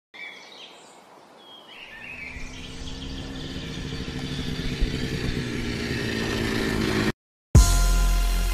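Birds chirping briefly, then a vehicle engine rumbles in and grows steadily louder for about five seconds before cutting off abruptly. Loud music with a heavy beat starts just before the end.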